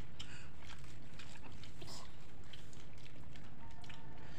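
Faint clicks and rustles of people eating snacks, with small plastic packets being handled and chewing, over a steady low background hum.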